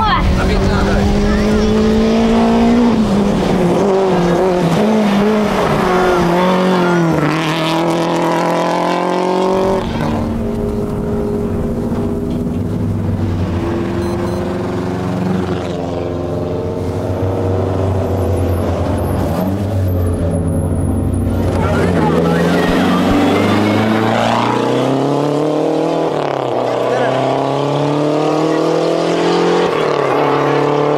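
Rally car engines revving hard as the cars pass on the stage, the engine note climbing and dropping again and again with the gear changes.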